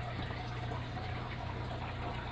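Aquarium equipment running: a steady trickle of water with a constant low hum, from the tank filters and air pump.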